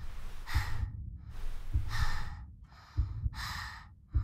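A girl's heavy, strained breathing from nervousness: a long breathy hiss about every second and a bit. Each breath comes with a pair of deep low thuds.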